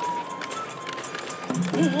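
Traditional Japanese shishimai lion-dance accompaniment: a high held note over regular drum strikes, with a singer's voice coming in about a second and a half in on a wavering held note.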